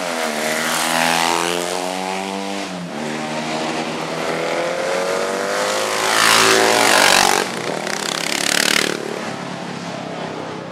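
Several classic racing motorcycles passing one after another through a corner, engines revving as they accelerate. The engine pitch falls away about three seconds in, then climbs steadily to the loudest pass about six to seven seconds in, with another burst of revving shortly before the end.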